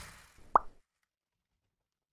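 Outro animation sound effects: the tail of a whoosh fades out, then a single short, rising plop about half a second in.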